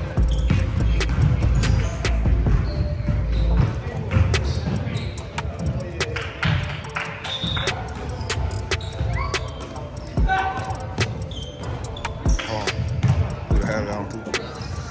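Basketball game in a large gym: the ball bouncing on the hardwood floor and sneakers squeaking, with spectators' voices underneath.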